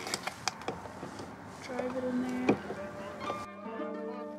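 Scattered light clicks and taps of a screwdriver and bolt against a plastic spoiler mounting base, over outdoor background noise and plucked-string background music. A little over three seconds in, the outdoor sound cuts off abruptly, leaving only the music.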